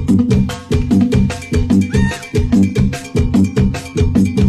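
Instrumental passage of Mexican banda music: low brass and tuba over a quick, steady percussion beat, with no singing.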